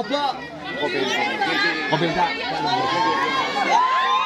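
A crowd of many voices shouting and talking over one another as a scuffle breaks out.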